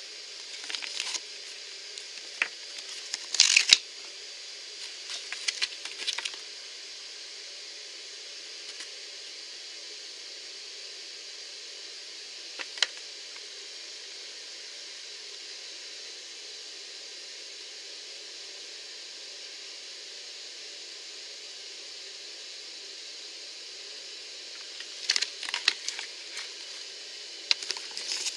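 Glossy paper checklist leaflet being handled and unfolded, crackling and rustling in short clusters near the start and again near the end, over a steady hiss.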